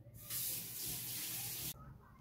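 A steady hiss that starts about a third of a second in and cuts off suddenly a little over a second later.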